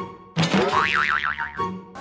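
A cartoon 'boing' sound effect, a springy twang with a wobbling pitch, bursts in about a third of a second in and lasts about a second, over light background music.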